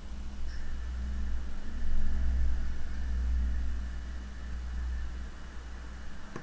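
A deep low rumble that swells about two seconds in and fades away again over the next few seconds, with a faint steady high whine underneath.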